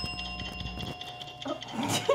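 The ringing tail of a bell-like chime sound effect, several steady high tones fading away after the answer is guessed correctly. A short "oh" and laughter come about one and a half seconds in.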